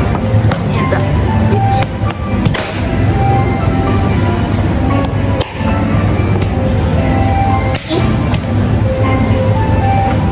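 Background music with steady sustained notes over a constant bass.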